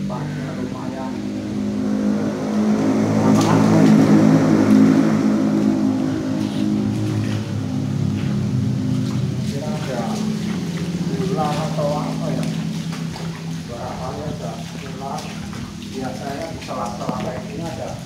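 A motor vehicle crossing the bridge overhead: its engine hum swells to its loudest about four seconds in and then slowly fades, echoing under the concrete span. Voices come in over it in the second half.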